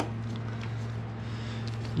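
A steady low hum with faint clicks and small handling noises as gloved hands work a carburettor into place on a motorcycle; a sharper click comes right at the start.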